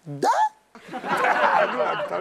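A short vocal exclamation that sweeps up and then down in pitch, then, a little under a second in, laughter from many people at once, like a studio audience laughing at a joke.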